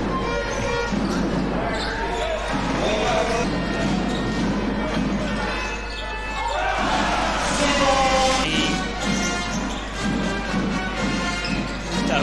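Basketball bouncing on a hardwood court during play, over steady arena music and voices in the hall.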